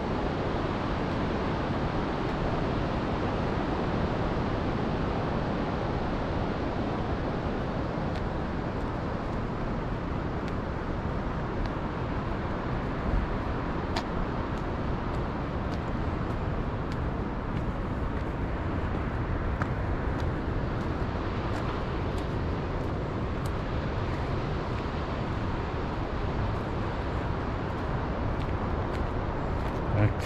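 Steady outdoor rushing noise, heaviest in the low end, with a faint click about halfway through.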